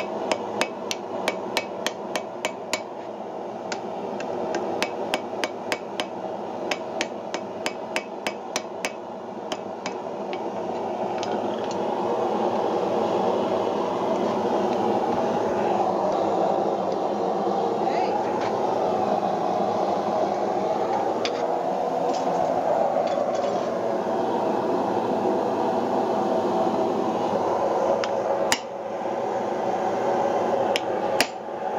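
Hand hammer striking a punch into hot wrought iron on an anvil, in quick even blows about two to three a second for the first ten seconds, then a few scattered blows. A steady rushing noise runs underneath and is louder in the middle stretch, when the hammering stops, with one more blow near the end.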